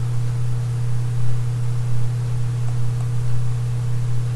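Steady low electrical hum with an even hiss underneath, unchanging throughout: background noise of the recording during a pause in speech.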